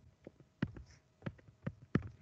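A stylus tapping on a tablet screen while handwriting: about seven faint, uneven clicks.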